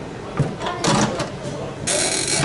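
A swing-away heat press being closed: its heavy upper platen is moved into place over the jersey and brought down, with a click and then two short scraping bursts about a second apart.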